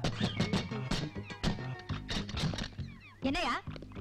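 Film soundtrack with background music under men's voices shouting and calling out, which a woman afterwards likens to goats bleating. A drawn-out wavering cry comes about three seconds in.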